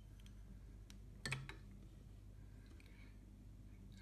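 Near silence: room tone with a few faint clicks, and a brief sharper double click about a second in.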